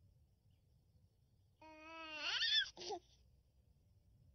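A baby's voice: one drawn-out vocal sound rising steadily in pitch, starting about a second and a half in, followed by a short second sound.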